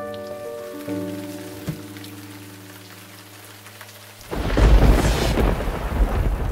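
Held notes of a small chamber ensemble of clarinet, violin, flute and oboe fade slowly. About four seconds in, a sudden loud, deep rumbling noise like thunder cuts in and rolls on.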